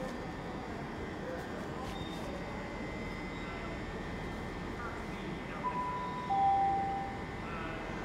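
Railway station public-address chime: two clear notes about six seconds in, the second lower than the first, the signal that an announcement is about to follow. Under it is a steady station background hum.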